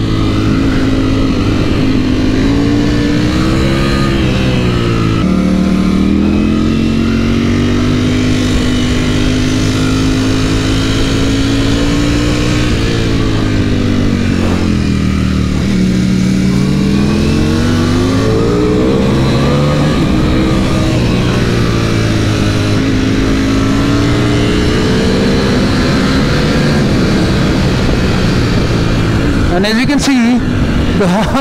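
Ducati Panigale V4 sportbike heard from onboard while ridden hard: the V4 engine's note climbs and falls with the throttle and gear changes, over wind rush on the microphone.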